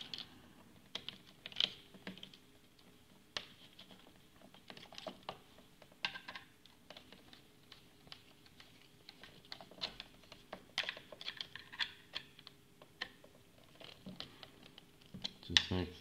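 Scattered light clicks and taps of stripped earth wires and a screwdriver working at the screw terminals of a plastic USB double wall socket faceplate as the earth cables are fitted and the terminal screws done up.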